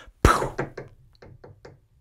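A single sharp knock about a quarter-second in, followed by a man's laughter in a few short bursts that fade away.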